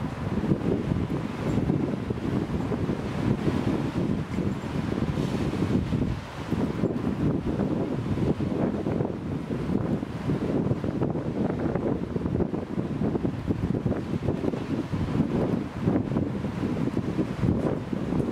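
Gusty wind blowing on the microphone, a rough low rumble that swells and eases, over the wash of choppy sea waves.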